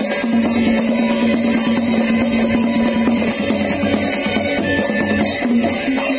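Thai nang talung shadow-puppet ensemble music: hand drums beaten in a fast, steady rhythm under a held pitched tone, with bright metallic shimmer above.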